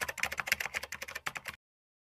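Keyboard typing sound effect: a fast, even run of clicks that stops suddenly about one and a half seconds in.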